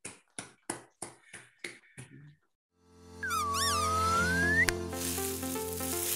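About seven hand claps, evenly spaced and fading over the first two seconds as a lecture's applause dies away. Then a short outro jingle starts: held synth tones with a sliding whistle-like melody, followed by a hissing swell near the end.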